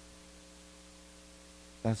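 Faint, steady electrical mains hum, a set of fixed low tones that do not change, from the sound system. A man's voice starts speaking near the end.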